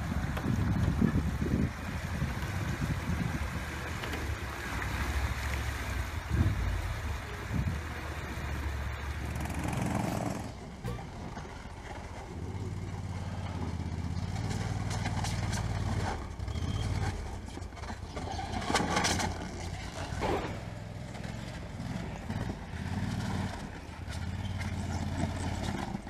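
Small amphibious ATV engine running as the machine moves off through the water, with splashing. About ten seconds in, the sound changes to a tracked amphibious ATV's engine running as it climbs a dirt trail.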